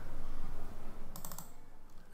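A short run of computer keyboard clicks about a second in, over faint background noise.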